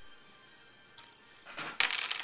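Four-sided dice rolled onto a wooden table for a burning hands damage roll: a few clicks about a second in, then a louder burst of clattering near the end.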